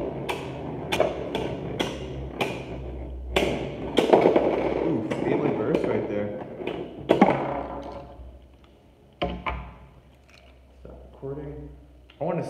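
Spinning Beyblade Burst tops, Revive Phoenix among them, clashing in a plastic stadium: a run of sharp clacks, a few a second. The clacks die away after about seven seconds and the sound falls quiet, apart from a single click a little later.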